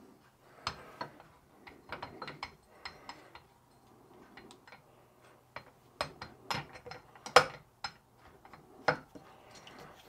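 Scattered light clicks and knocks of small metal parts being handled as a jaw-type shaft coupling is fitted together inside a cast aluminium drive housing, the sharpest knock about seven seconds in.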